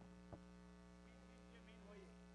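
Near silence with a steady electrical mains hum, and a single faint click about a third of a second in.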